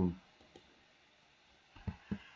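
A few short computer mouse clicks: one faint click about half a second in and a couple of sharper ones near the end. Between them there is near silence, after the tail of a man's spoken word.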